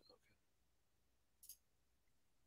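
Near silence, with a single faint click about one and a half seconds in: a computer mouse button being clicked.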